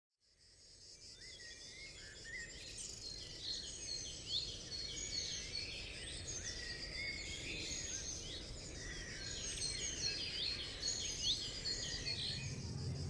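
Woodland ambience: many birds singing in short chirps and sweeping whistles over a steady insect drone, fading in from silence over the first couple of seconds.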